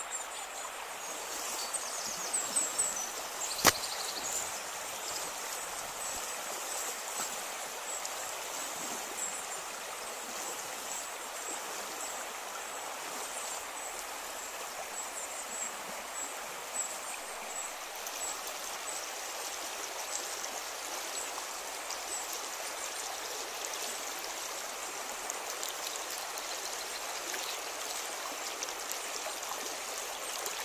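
A shallow rocky stream running over stones, a steady rush of water. A single sharp click comes a few seconds in.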